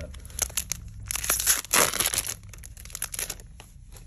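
Foil wrapper of a Magic: The Gathering set booster pack crinkling in the hands, then being torn open, loudest from about one to two seconds in, with lighter crinkles after.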